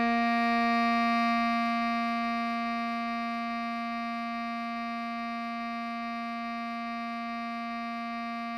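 Bass clarinet holding the melody's final note, written C5 (sounding the B-flat below middle C), as one long steady note that slowly gets quieter.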